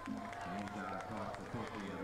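Indistinct voices talking in the background amid open-air football stadium noise.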